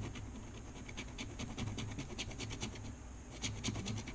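Plastic scratcher tool scraping the coating off a scratch-off lottery ticket in a rapid run of short, faint strokes.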